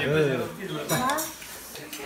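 Spoons clinking against ceramic soup bowls as people eat, with a few light clinks about a second in, over people talking.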